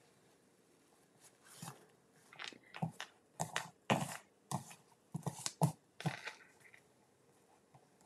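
Crinkled seam binding ribbon and paper rustling and crackling between the fingers as a bow is tied, in a quiet run of short, irregular rustles that stops shortly before the end.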